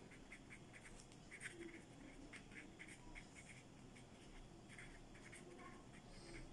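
Near silence, with faint, irregular short scratches of a pen drawing or writing on paper.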